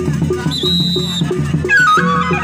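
Traditional Sasak peresean music: drums keep an even beat of about four strokes a second under a reed-pipe melody that glides down near the end. A high, steady whistle note sounds for under a second, about half a second in.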